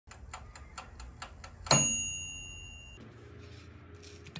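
Oven's mechanical timer ticking about four times a second, then ringing its bell once as it runs out, signalling that the baking is done; the ding rings on for about a second before it is cut off.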